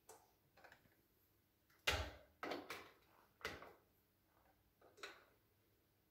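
A few short, sharp clicks and knocks of a hand working at a wall socket outlet, the loudest about two seconds in and the others spread over the next three seconds.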